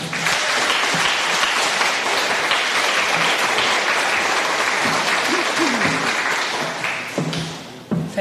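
Audience applauding, starting right after the closing thanks and dying away near the end.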